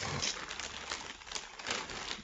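Plastic packaging and products being rummaged through by hand: a continuous run of light crinkles and small irregular taps.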